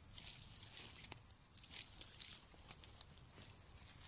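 Faint rustling of garden plants and light footsteps, with a few scattered soft ticks.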